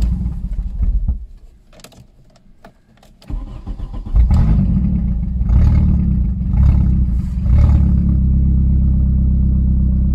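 Petrol car engine with no exhaust fitted, on year-and-a-half-old fuel after long standing: it runs briefly and dies about a second in. About three seconds in it starts again and catches, surging a few times before settling into a steady, even idle near 1000 rpm.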